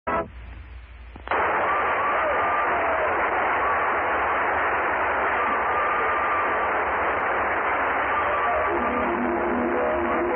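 Old narrow-band 1942 radio broadcast recording. After a second of quiet hiss, a loud, dense rush of noise sets in with faint music under it, and band notes come through clearly near the end.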